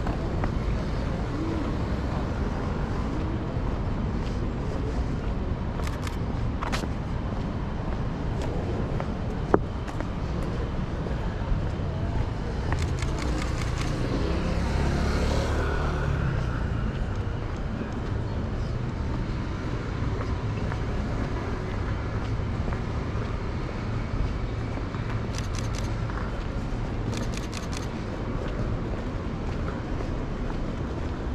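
City street ambience: a steady rumble of road traffic, with a vehicle passing more loudly about halfway through. Scattered sharp clicks come now and then, one loud click about ten seconds in.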